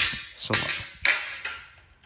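Metal projector-screen frame rails knocking and scraping as one is slid onto the other's joiner plate, with two knocks about half a second and a second in.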